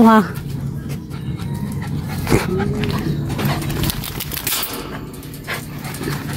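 A small dog gives a brief, arching whine about two and a half seconds in while being petted.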